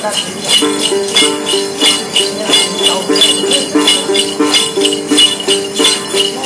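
A đàn tính, the Tày-Nùng long-necked gourd lute of Then ritual music, plucked in a steady repeating figure, with a cluster of small jingle bells shaken on every beat.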